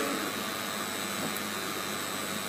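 Steady background hiss with no distinct events: room tone picked up by the microphones, with a faint steady hum.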